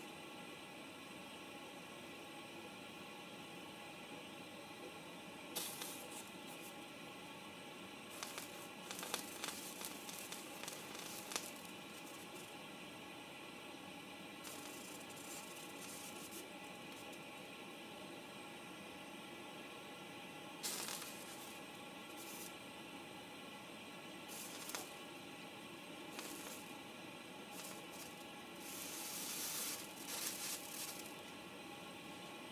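Water sizzling on a very hot cast-iron griddle: short crackling bursts over a faint steady hiss, with a cluster about a third of the way in and a longer burst near the end.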